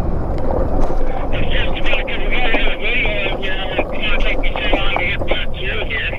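An electric bike riding over rough grassy ground: wind buffeting the microphone and a low rumble, with a steady motor hum. About a second in, a high warbling chatter joins.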